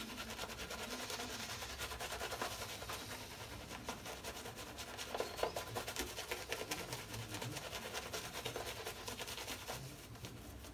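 Shaving brush face-lathering: the bristles are worked briskly over a soaped face, giving a soft, continuous rapid scratching and rubbing through the lather.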